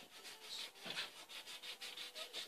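Felt-tip marker rubbing over a smooth tabletop as a child colours, faint quick back-and-forth strokes several a second.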